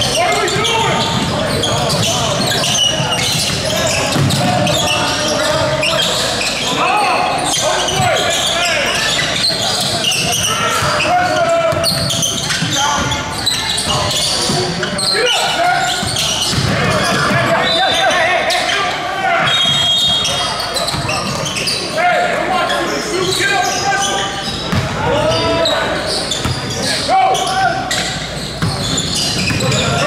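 Basketball game sounds in a large gym: a ball bouncing on the hardwood court as it is dribbled, with players and spectators calling out indistinctly, all echoing in the hall.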